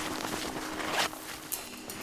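Boots crunching and sinking into deep snow: one step about a second in and a fainter one about half a second later.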